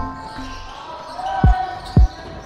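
Basketball bouncing on a wooden gym floor: two sharp thumps, about a second and a half in and again just before the end.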